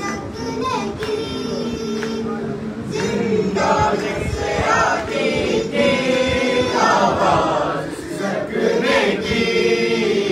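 A noha, the Shia lament for the Imam's family, sung unaccompanied by a group of men's and boys' voices in chorus, a steady melodic refrain with no pause.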